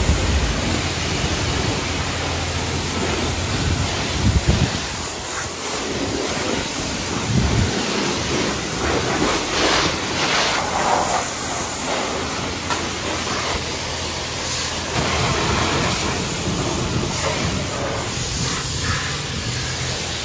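High-pressure spray from a self-service car wash wand hitting a car's body panels, a steady hiss of water spray.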